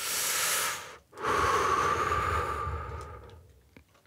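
A person taking a hit of smoke: a hissing breath of about a second, then a longer, rougher breath of about two seconds with a low rumble, fading out.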